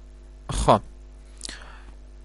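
A lecturer's brief voiced sound, falling in pitch, about half a second in, then a short breath, over a faint steady hum.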